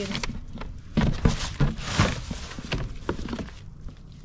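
Items being handled on a table: a string of light knocks as plastic objects are set down and picked up, with a plastic bag rustling about two seconds in. It gets quieter near the end.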